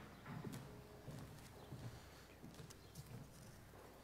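Faint footsteps: a person walking with soft, irregular steps and a few small clicks.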